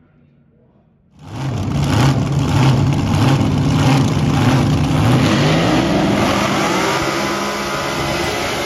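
Supercharged front-engine dragster's V8 starting loud about a second in and running with a regular pulsing of about two a second. It then revs up in a rising pitch as the car does a burnout, spinning its rear tyres into smoke.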